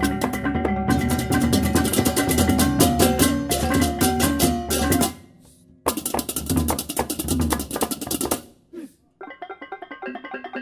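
Balinese baleganjur gamelan ensemble playing fast, with gongs, drums and dense crashing cymbal strokes. About five seconds in the whole ensemble stops dead, then crashes back in under a second later. Near the end it drops away again to a quieter passage without the cymbals.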